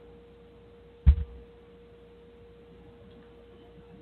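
A faint steady pure tone over a low hiss on the broadcast audio, with one short low thump about a second in.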